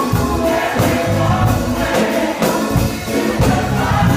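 Live gospel music: a choir singing over a drum kit keeping a steady beat, with deep bass notes underneath.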